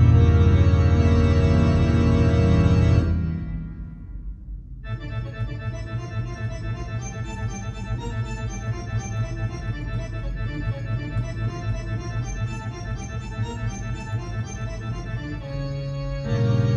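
Pearl River PRK300 digital piano playing its 'Organ 2' organ voice: loud sustained chords that are released about three seconds in. After a brief lull comes a quieter passage of short, quickly repeated notes, and a loud held chord enters again right at the end.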